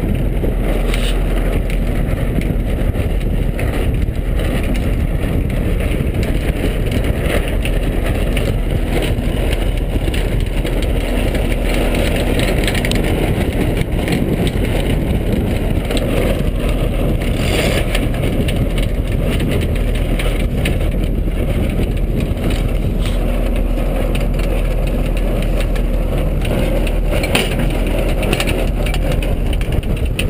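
Wind buffeting the microphone of a camera mounted on a sailboat: a loud, steady rumble and rush with no let-up.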